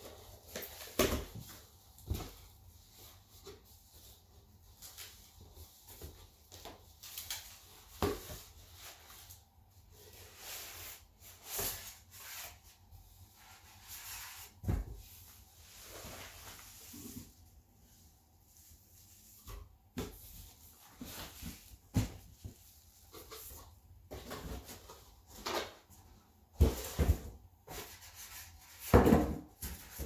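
A cardboard speaker box being opened and unpacked: flaps and packing rustling and scraping, with scattered knocks. The loudest handling comes near the end, as the foam-wrapped speakers are lifted out.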